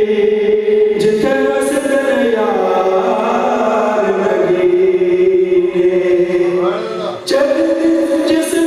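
A man singing devotional verse unaccompanied into a microphone, in long held notes that glide between pitches. A short breath comes about seven seconds in before he carries on.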